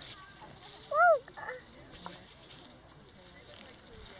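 A brief high-pitched vocal 'ooh' that rises and falls, about a second in, over faint rustling of hands in dry grass.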